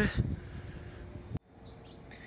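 Faint outdoor ambience with a few faint bird chirps. The sound cuts out abruptly for a moment about one and a half seconds in, then comes back with a slightly different background.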